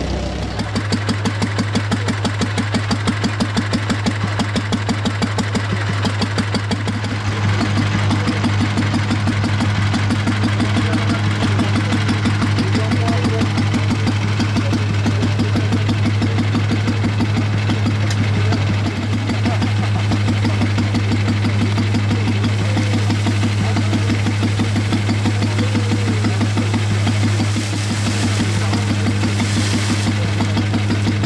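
Old stationary farm engine running steadily, with a regular throb in the first few seconds; its sound grows fuller about seven seconds in.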